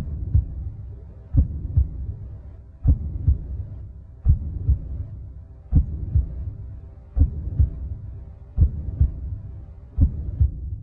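A slow heartbeat sound effect: paired low thumps, lub-dub, repeating about every second and a half, over a faint steady hum.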